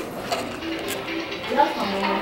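Murmured voices over background music, with a couple of light clicks.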